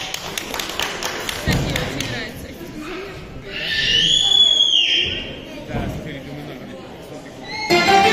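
Knocks and thumps of a wooden chair being carried and set down on a stage, over children's voices in a large hall; a high falling squeal about four seconds in. Near the end a song's backing track with accordion starts.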